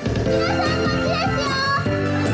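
Live idol pop song: a loud backing track with girls' voices over it, singing or calling out lines into microphones.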